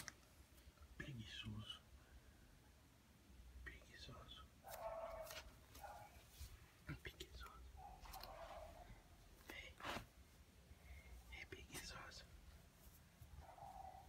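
Faint whispering voice in a few short phrases, with occasional sharp clicks of the phone being handled and fur brushing against the microphone.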